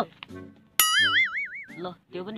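Cartoon "boing" sound effect: a sharp click, then a spring-like tone that wobbles up and down in pitch for about a second.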